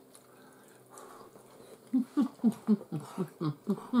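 A person's voice making a quick run of short, pitched, wordless sounds, about four a second, from about halfway in. It is hummed 'mm' sounds or giggling, not words.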